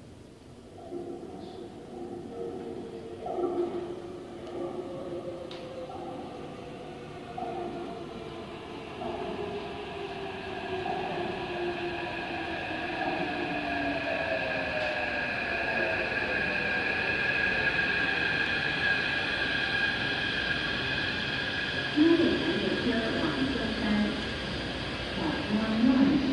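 Taipei Metro C371-type refurbished train running into an underground station and slowing: its motor tones slide down in pitch as it brakes, while a steady high whine and the overall rumble grow louder as it nears the platform.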